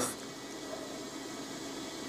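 Steady low hiss of room tone, with no distinct sound standing out.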